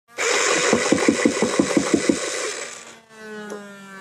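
Motorized Nerf Vortex Nitron disc blaster firing full-auto: a loud motor whir with rapid clacks about six a second. From about three seconds in the motor winds down with a faint falling whine.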